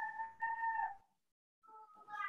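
A high-pitched call in two held notes, the second dropping in pitch at its end, followed after a silence by a short higher note near the end.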